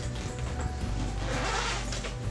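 Background music with a steady bass line, and the zipper of a fabric diaper bag pulled open in one rasp about a second and a half in.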